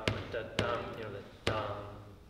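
A man sings short "dum" syllables to mark the beats of a two-four rhythm. Each begins with a sharp knock, three in all and unevenly spaced.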